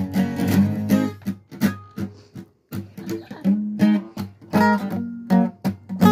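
Acoustic guitar strummed in chords. The strumming thins out and pauses briefly about two and a half seconds in, then picks up again.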